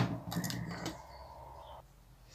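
A single sharp knock of a small plastic item set down on a tabletop, followed by a few faint handling ticks during the first second, then quiet room tone.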